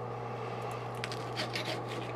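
Faint scrapes of a knife and fork cutting a vegetable samosa on a ceramic plate, over a steady low hum.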